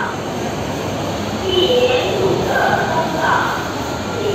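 Indistinct chatter of ferry passengers over the steady rumble of the ferry's engines.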